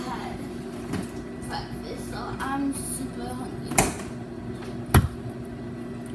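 Microwave oven running with a steady hum, heating pancakes topped with Rice Krispies. Two sharp knocks about a second apart in the second half, the second the loudest.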